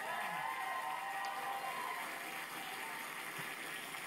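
Studio audience applauding, with a faint held tone through the first two seconds.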